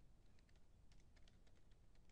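Faint typing on a computer keyboard: an uneven run of about a dozen quick keystrokes.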